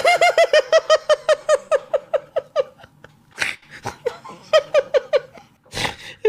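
A man laughing hard: a fast run of high-pitched "ha" pulses, about six a second, for nearly three seconds, a gasp for breath, then a second, shorter run of laughs and another sharp breath in near the end.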